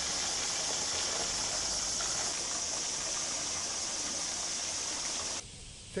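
A dense chorus of cicadas shrilling: one steady, high hiss that cuts off suddenly near the end.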